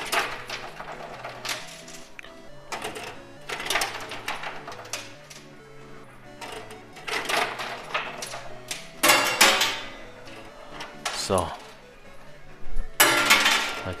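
Metal coins clattering in a coin pusher machine: coins dropped in land on the heaped coins and tumble, in several separate bursts, over steady background music.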